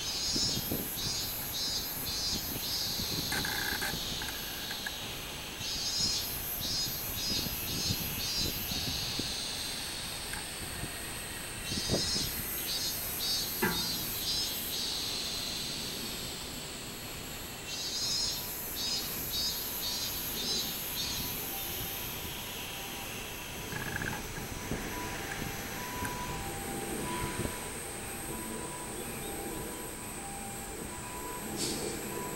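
Robust cicadas (minmin-zemi, Hyalessa maculaticollis) singing: four phrases of rapid pulsed notes, about three a second, each phrase two to three seconds long and coming about every six seconds, over a steady high whine.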